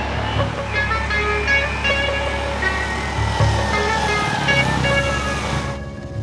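Sport motorcycle engine approaching, then its pitch falling steadily as it slows to a stop, under background music.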